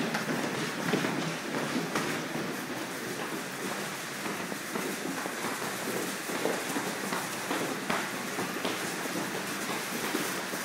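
Footsteps climbing concrete train-station stairs, a few separate steps standing out over a steady hiss of rain.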